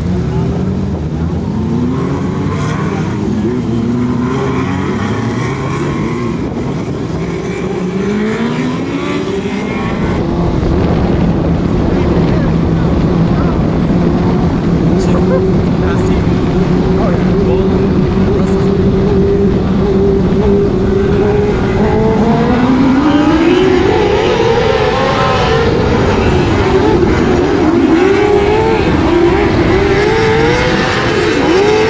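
Dirt-track race car engine. In the first ten seconds it revs up in pitch again and again in short sweeps, then it holds a steady drone at constant speed. From about 22 seconds it climbs sharply and its pitch rises and falls with the throttle as it accelerates hard.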